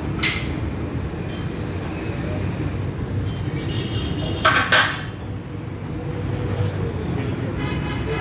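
Steady low background rumble, with a sharp metallic clank of gym weights about four and a half seconds in and a lighter click near the start.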